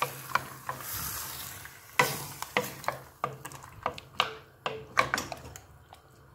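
Wooden spoon stirring chunks of taro and pork in a stainless steel pot, with the meat sizzling for the first couple of seconds. The spoon knocks irregularly against the pot and the chunks as they are turned.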